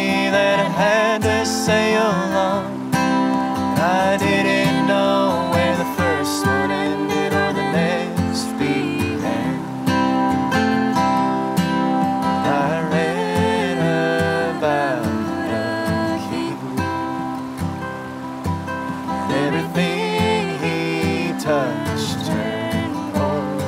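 Acoustic guitar played in a folk song, with a man and a woman singing together over it; the voices rise and fall in long held phrases.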